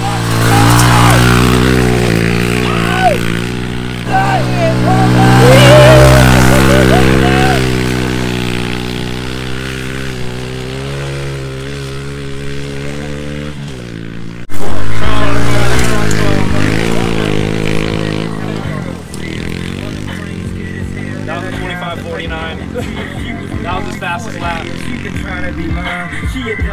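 Honda CRF110 pit bike's small single-cylinder four-stroke engine revving up and down as it is ridden, loudest about six seconds in. There is an abrupt cut about fourteen seconds in, then the engine again, falling and rising in pitch.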